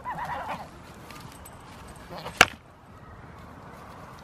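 A goat bleats briefly with a wavering call at the start. About two and a half seconds in comes one sharp clack, goats' horns knocking together as two goats spar head to head.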